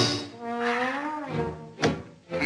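Cartoon score with a bending melodic line, then one sharp thunk near the end: a cartoon mallet blow on the head.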